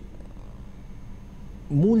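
A pause in a man's talk, filled only by a low steady hum of room tone; he starts speaking again near the end.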